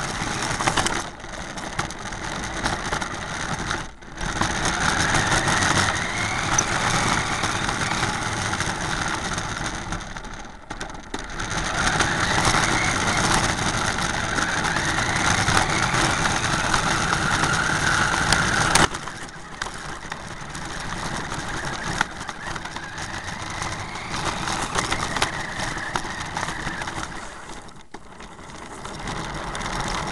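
Remote control car driving, heard through a camera mounted on the car: a steady motor sound whose pitch rises and falls with speed, dropping away briefly about four times.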